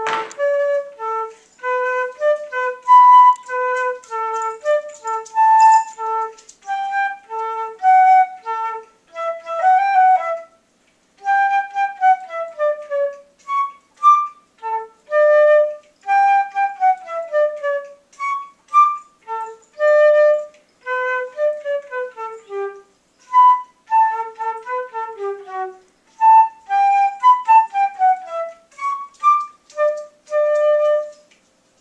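Solo concert flute playing a melody of quick, separated notes with several falling runs, with one short pause for breath about ten seconds in.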